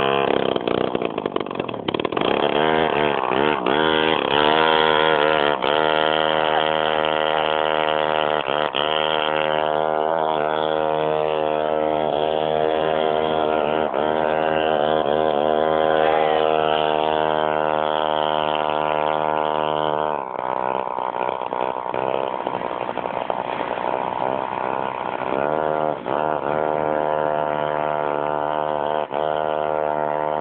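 Small engine of a motorized scooter running and revving up and down repeatedly, then settling into a steadier run for the last third.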